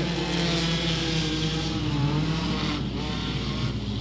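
Several front-wheel-drive dirt-track race cars running together at a slow caution pace, their engine notes overlapping and drifting up and down in pitch.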